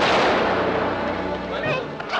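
Rifle volley from a firing squad: one sudden loud blast at the very start, its echo dying away slowly over the next second and more.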